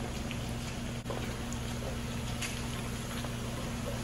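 A steady low hum and hiss from the stove area, with a few faint light knocks as chiles and garlic cloves are set into a pan.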